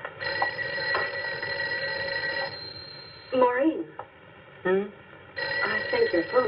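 A telephone ringing twice, each ring about two seconds long, the second starting near the end, with short vocal sounds in the gap between them.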